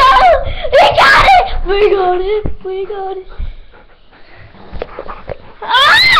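Wordless high-pitched squealing and whining, gliding up and down in quick bursts, then a few short held notes, and a loud squeal sweeping down in pitch near the end.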